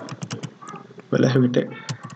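Computer keyboard being typed on: a quick run of key clicks through the first second as a word is typed in.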